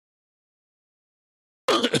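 Dead silence, with no sound at all, then a man's voice abruptly starts speaking near the end.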